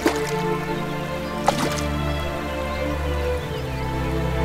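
Soft background music of long held notes, with two sharp drip-like plinks, one at the very start and one about a second and a half in.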